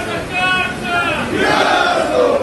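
A group of men shouting political slogans in unison, a protest chant, growing louder and denser in the second half.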